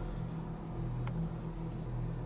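Steady low electrical hum from the powered lock control panel and its equipment, with a faint tick about a second in.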